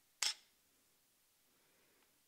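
A single short, sharp mechanical click from a Canon EOS 700D DSLR body's mirror and shutter mechanism, about a quarter of a second in.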